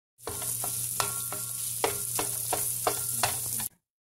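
Crumbled ground meat sizzling in a nonstick pan while a slotted spatula scrapes and taps against the pan about three times a second, each tap ringing briefly over a low hum. The sound cuts off suddenly near the end.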